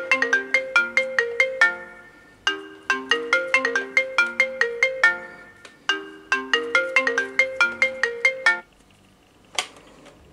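iPhone 5 ringtone for an incoming call: a bright, repeating melody of quick mallet-like notes in phrases about 2.5 s long with short gaps between them. It cuts off about 8.5 s in as the call is answered, and a single click follows about a second later.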